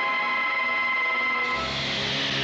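Background film score: a sustained, effects-laden chord held steady, which gives way about a second and a half in to a noisier swell over a low drone.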